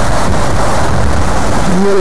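A steady, loud rushing noise with no clear tone, strongest in the low and middle range.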